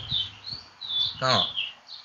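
Small birds chirping: several short, high, gliding chirps, with a man's voice speaking one brief word in the middle.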